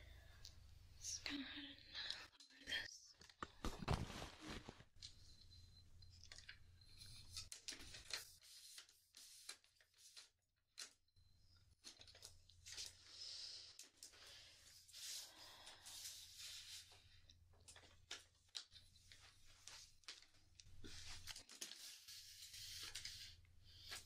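Faint rustling, scraping and scattered knocks from a camera being handled and lowered on its mount, with one louder bump about four seconds in.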